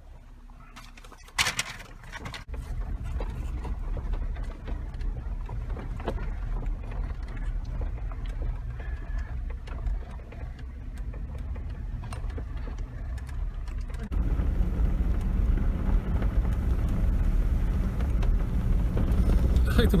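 Jeep Wrangler JK Rubicon driving along a rough dirt forest road, heard from inside the cab: a steady low rumble of engine and tyres with small knocks and rattles from the bumps. A sharp knock comes about a second and a half in, and the rumble grows louder about fourteen seconds in.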